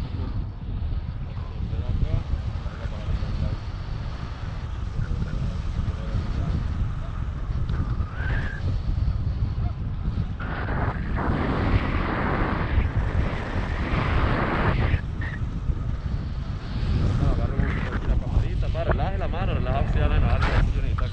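Wind buffeting the microphone of a camera held out on a selfie stick during a tandem paraglider flight: a steady low rumble of rushing air that grows louder and brighter for a few seconds in the middle.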